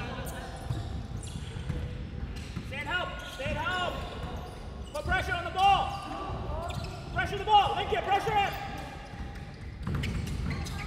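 A basketball is dribbled on a hardwood gym floor, with short high sneaker squeaks in clusters during the play and players' voices in the hall.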